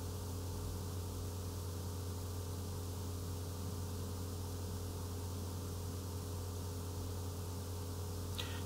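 Steady low electrical hum with faint hiss, unchanging throughout: the background noise of the voice-over recording, with no other sound.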